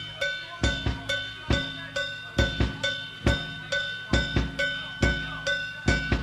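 Live punk drum kit played alone in a steady beat, about three hits a second, as a song intro. A high metallic ringing tone hangs over the beat until just before the end.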